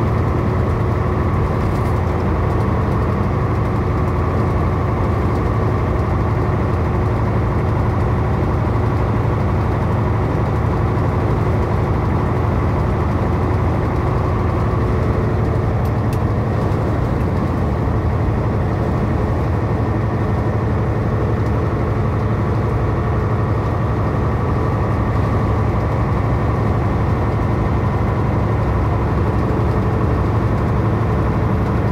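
Steady drone of a truck's engine and tyre noise, heard from inside the cab while cruising at highway speed.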